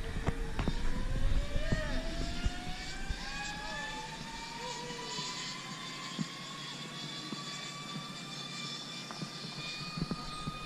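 Zip-line trolley pulleys rolling along the steel cable: a whine that rises steadily in pitch as the rider picks up speed over the first several seconds, then holds steady.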